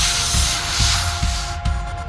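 Hissing spray of water-mist nozzles discharging, an animation sound effect over background music with a steady low beat; the hiss cuts off about one and a half seconds in.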